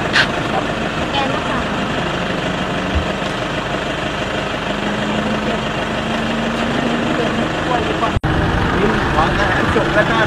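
Pickup truck engines idling close by, a steady hum under background voices. The sound cuts out for an instant about eight seconds in.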